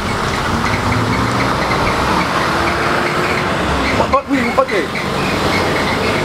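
A motorcycle engine running steadily at idle, with a short spoken phrase over it near the end.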